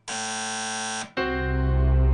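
Mobile phone ringing with an electronic buzzing tone, one steady buzz of about a second, cutting off sharply. Soft background music with a deep bass comes back right after it.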